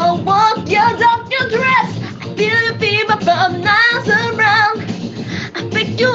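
A woman singing with vibrato over music, holding wavering notes without clear words.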